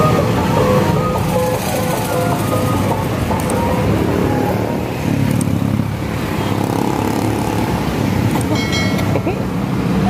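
Motorcycle traffic passing on a busy street, engines running with a steady rumble. A short high tone sounds near the end.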